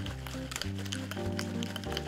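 Background music with held notes and a bass line. Under it, a metal cocktail shaker is shaken hard, its single ice cube almost melted away.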